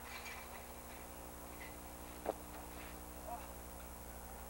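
Steady electrical hum under faint voices, with one sharp knock a little over two seconds in from the kids scuffling in the chain-link cage.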